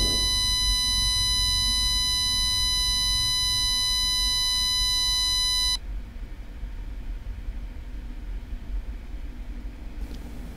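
A steady, high-pitched electronic beep holds at one pitch for nearly six seconds, then cuts off abruptly, leaving a low background hum.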